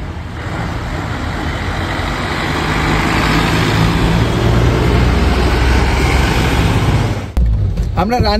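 A bus driving up the road and passing close by. Its engine and tyre noise builds as it approaches and stays loud while it goes past, then cuts off suddenly near the end.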